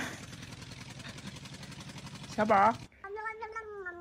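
A kitten mews once, short and loud, about two and a half seconds in, after a steady rough noise with a fast flutter.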